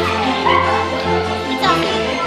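Background music playing, with two short high cries over it, one about half a second in and one near the end.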